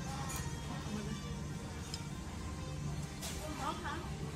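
Background music in a busy restaurant, with people talking and the occasional light clink of tableware.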